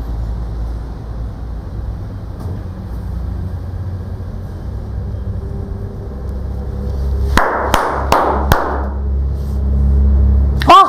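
A steady low room hum, then about seven seconds in, four quick sharp hand claps within about a second.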